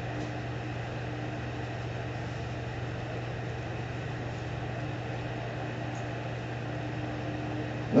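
Steady low hum and hiss of room background noise, unchanging throughout.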